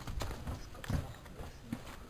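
Footsteps and handling bumps from a handheld camera being carried across a gritty concrete floor: a few irregular dull thumps, the loudest about a second in.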